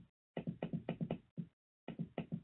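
A quick, irregular run of soft taps, about eight a second, that stops briefly and starts again near the end.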